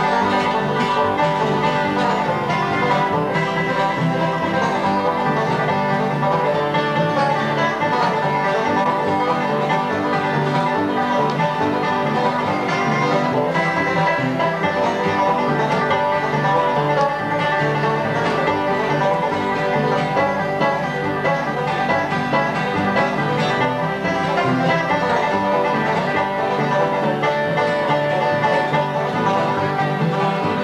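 Live bluegrass band playing steadily: banjo picking with acoustic guitars and upright bass.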